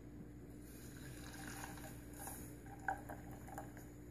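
Faint pouring of a Red Bull and flavoured gelatin mixture from a glass measuring cup into a saucepan, with one brief tap about three seconds in.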